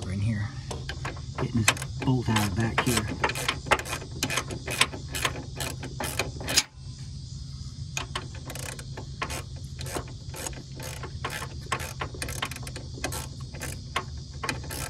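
Hand ratchet clicking in short, uneven runs as it is swung back and forth, backing out a lower control arm bolt.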